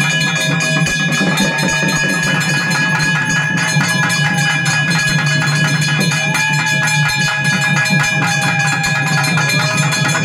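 Loud temple music: fast, continuous drumming with steady ringing bell tones and a slow, gliding melody line over it.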